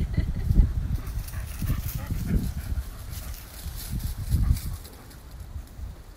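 Dogs moving about on grass, with irregular low thuds and faint rustling.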